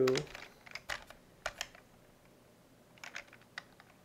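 Computer keyboard keystrokes: scattered clicks in two short runs with a pause of over a second between them.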